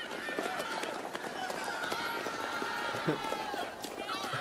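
A group of people shouting and yelling together as they run, a long held cry of many voices.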